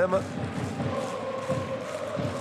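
Football stadium crowd of supporters chanting, with a steady held note running through the chant from about half a second in.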